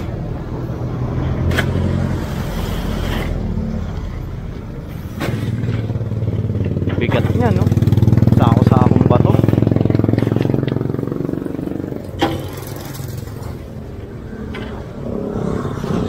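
Street traffic running past, with one vehicle's engine swelling to its loudest about halfway through and then fading as it passes close. A few sharp knocks in between as sacks of rubble are dropped onto the steel bed of a dump truck.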